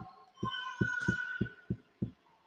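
A run of soft, low thumps, about three a second, with a faint steady tone behind them.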